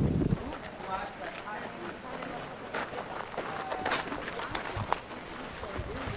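Faint, scattered voices of people talking, with a short burst of wind buffeting the microphone at the very start.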